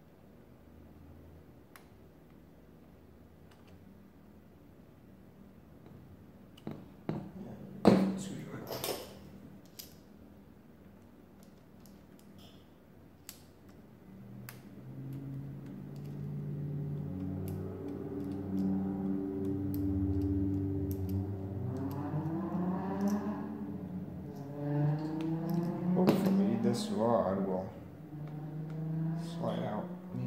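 Metal parts of an antique arithmometer's carriage clicking and clacking as a screw is worked loose and the carriage freed, with one sharp clack about eight seconds in. From about halfway a low sustained humming sound with shifting pitch sets in and carries on to the end.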